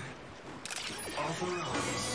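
Transformation-belt sound effects on a TV show's soundtrack: a sharp mechanical click a little over half a second in, followed by a short voice call from the device.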